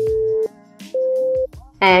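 Two electronic workout-timer beeps, each about half a second long, the second a little higher than the first, over soft background music; they mark the end of an exercise interval.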